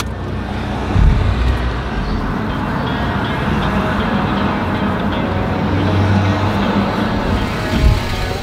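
Car driving: steady engine and road noise with a low rumble, with a low thump about a second in and another just before the end. Faint music sits underneath.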